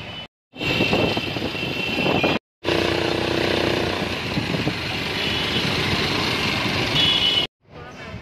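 Road traffic heard from a moving vehicle: engine and tyre noise in three short cuts, separated by brief silences. A steady pitched tone sounds about three seconds in, and higher tones come near the start and near the end.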